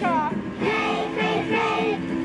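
A children's song: young children's voices singing held notes over a musical backing.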